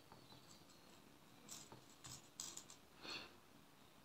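Faint handling sounds of a small metal jump ring and fine chain between the fingers: a few short, quiet clicks and rustles in the second half, over near silence.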